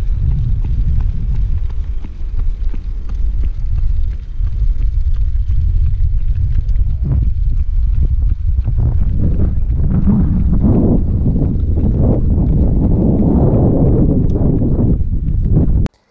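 Wind buffeting a moving camera's microphone: a loud, steady low rumble that swells from about nine to fifteen seconds in, then cuts off suddenly near the end.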